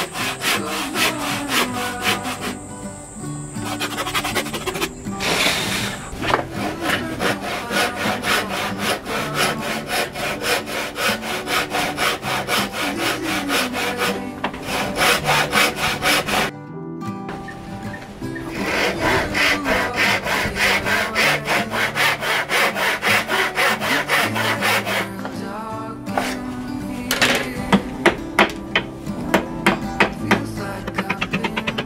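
Handsaw cutting a row of kerfs across a rosewood block, in fast, even strokes with a short break partway through, to waste the block down to thickness. Near the end come a few sharper knocks of a hammer striking a chisel.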